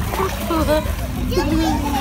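Pool water splashing as a child swims with a mermaid monofin, with children's voices mixed in, one clearest near the end.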